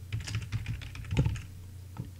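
Computer keyboard being typed on, an irregular run of keystroke clicks with one harder stroke about a second in.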